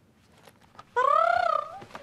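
A woman's teasing wordless vocal sound, about a second long, that rises and then falls in pitch. It starts about a second in, after a near-silent pause.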